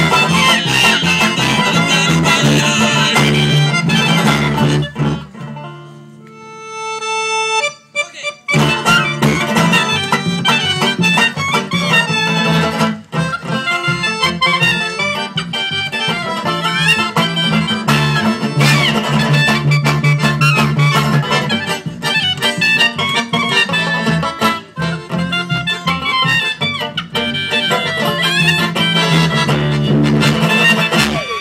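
Live acoustic band music with accordion, woodwind, upright double bass and guitar playing together. About five and a half seconds in the band drops out, leaving one lone held note, and the full band comes back in at about eight and a half seconds.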